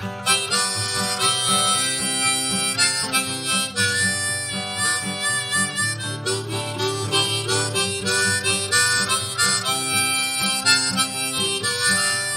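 Harmonica playing an instrumental blues-style solo line, with guitar accompanying underneath.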